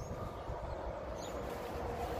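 Outdoor field ambience: a steady low rumble on the phone's microphone, with two short, faint, high chirps of a small bird about a second apart.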